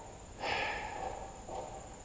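A person's breath, one long exhale lasting about a second, over a steady high-pitched insect drone.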